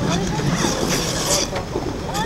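Outdoor ice-rink ambience: ice skate blades hissing and scraping on the ice, loudest about a second in, over a low steady rumble and the chatter of distant voices.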